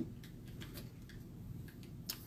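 Quiet room tone with a few faint, light ticks scattered through it.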